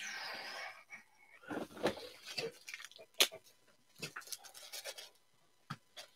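Faint handling noise of trading cards and plastic penny sleeves: a short breathy hiss at the start, then soft rustling and scattered light clicks.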